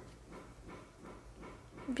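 Faint, soft rustling of cotton yarn drawn over a crochet hook as a stitch is worked, a few light strokes a second.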